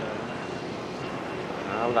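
Steady street traffic noise, with a motorbike passing close by.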